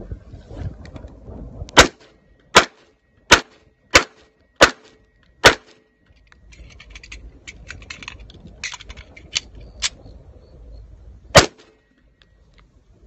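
1911 pistol firing six quick shots over about four seconds, then a pause filled with softer metallic clicks and rattles, then a single shot near the end.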